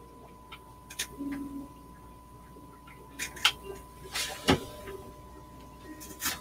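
Scattered light clicks and knocks of camera handling against aquarium glass, about half a dozen spread irregularly, over a faint steady high-pitched tone.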